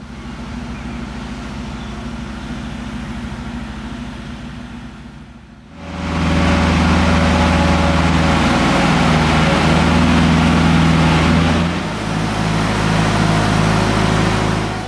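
An engine running steadily with a deep hum. It gets much louder about six seconds in and shifts in pitch about twelve seconds in.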